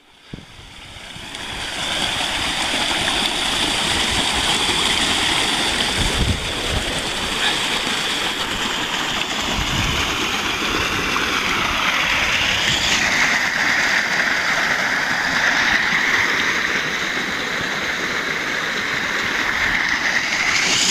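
Rushing water of a rain-swollen stream, a steady hiss that builds over the first two seconds and then holds even, its pitch settling somewhat lower about two-thirds of the way through.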